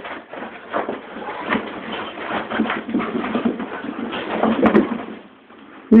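A Vizsla and another dog play-wrestling on a mattress: irregular scuffling, bumping and rustling, with rough animal noises mixed in. It dies down shortly before the end.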